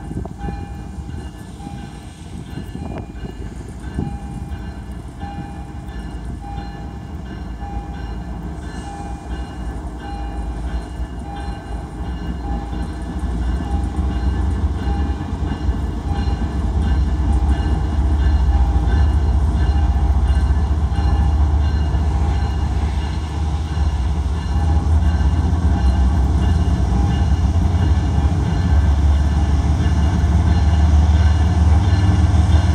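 Three GE ES44C4 diesel locomotives getting a freight train under way after a hold, their deep engine rumble swelling steadily louder as they come closer. A bell rings throughout at about three strokes every two seconds.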